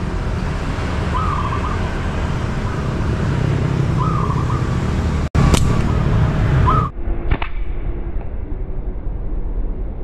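A small bird chirping briefly every few seconds over a steady low rumble. Just past halfway there is a sharp snap from a rubber-band slingshot being shot up into the tree at the bird, and a couple of clicks come about two seconds later.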